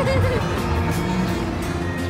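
Background music with steady held tones, under a voice that trails off in the first half-second.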